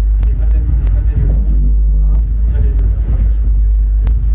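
Eurorack modular synthesizer putting out a loud, steady deep bass drone, with people's voices over it and a few sharp clicks.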